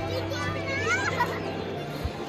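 A little girl squealing with delight as she is swung round by the arms: one high, gliding squeal about half a second in, over quiet background music.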